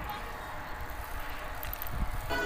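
Steady low wind and road noise from riding a bicycle, picked up by a handheld camera's microphone.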